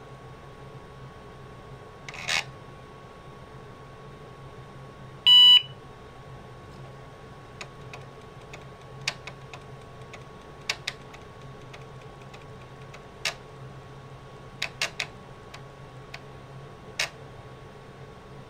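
IBM PS/2 Model 30 booting: its speaker gives one short POST beep about five seconds in. Scattered single and paired clicks of the 720K floppy drive's head seeking follow, over a steady hum from the machine. A short burst of noise about two seconds in comes first. This is the working drive, seeking normally before it reads.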